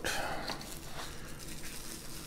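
Faint crinkling and rustling of plastic bubble wrap as a small wrapped part is drawn out of a cardboard box, with a light tap about half a second in.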